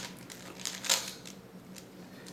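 Plastic layers of a 3x3 speedcube being turned by hand: a few faint clicks and clacks, the sharpest about a second in.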